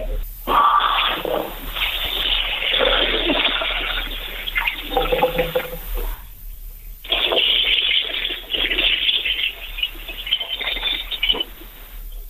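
Water running and splashing from a tap as a man washes his face, heard through a telephone line; it stops for about a second some six seconds in, then runs again.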